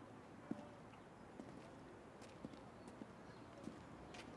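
Faint, irregular footsteps of hard-soled shoes on stone paving, a few soft clicks spaced roughly a second apart over a quiet outdoor hush.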